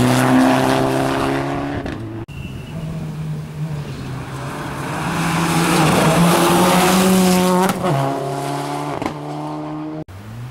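Rally cars at full throttle on a gravel stage: a Mitsubishi Lancer Evolution's turbocharged engine runs hard and cuts off about two seconds in. Then a Subaru Impreza WRX STI's flat-four approaches with its engine note climbing, breaks sharply near the end as it lifts or changes gear, and drops in pitch as it goes past.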